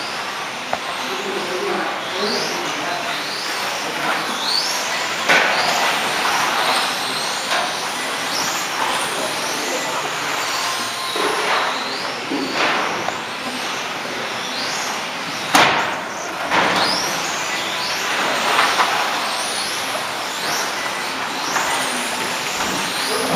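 Electric 1/12-scale RC pan cars racing, their motors whining in short rising pitches over and over as they accelerate out of the corners, over a steady high hiss. A sharp knock comes about fifteen seconds in.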